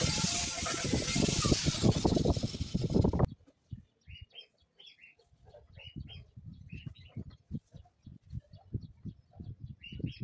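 Angle grinder with a sanding disc grinding the steel rebar frame of a small bicycle sculpture, a loud whining rasp that cuts off suddenly about three seconds in. After that, birds chirp in short repeated calls, with faint low knocks.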